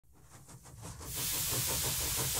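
Steam hiss fading in over about the first second, then holding steady, with a quick, even pulsing of about eight beats a second beneath it.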